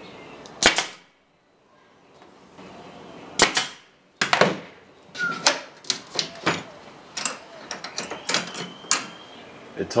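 Two sharp shots from a pneumatic brad nailer driving brads into a pine box, about three seconds apart, followed by a run of irregular clicks and knocks as bar clamps are handled and set against the wood.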